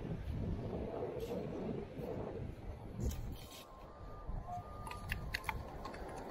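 Long-handled metal beach sand scoop digging into packed sand and lifting a load, with gritty crunching and scraping over a steady low rumble. A few faint short beeps from the Minelab Equinox 800 metal detector come near the end.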